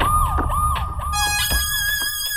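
Police siren in a fast yelp, its pitch jumping up and sliding down about three times a second over a low rumble, used as a scene-transition effect. A little after a second a steady high whistle-like tone comes in as the siren fades out.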